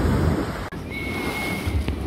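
Ocean surf breaking and washing, with wind rumbling on the microphone. About two-thirds of a second in the sound cuts abruptly to a second recording of surf foaming between concrete blocks, with a short, thin, steady high tone near the middle.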